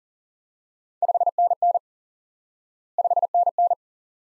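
Morse code '5NN' sent twice at 40 words per minute as a single steady beep tone, starting about one second in and again two seconds later. Each group is five quick dits for the 5, then dah-dit, dah-dit for the two Ns.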